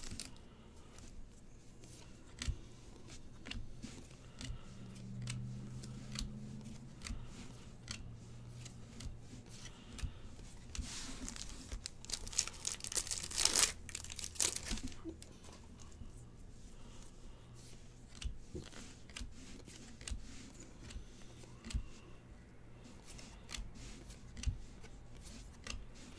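Foil trading-card pack wrapper torn open and crinkled by hand, with two louder tearing rushes near the middle, among small clicks and taps of cards being handled and laid down.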